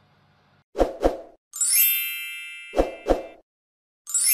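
Outro sound effect for a subscribe button: two quick pops about a second in, then a bright bell-like ding that rings and fades, then two more quick pops near the end.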